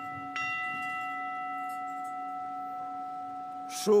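Altar bell struck once, about a third of a second in, its clear tone holding and slowly dying away, over a low steady hum. It is rung at the epiclesis, as the celebrant's hands are extended over the offerings, to signal the approach of the consecration.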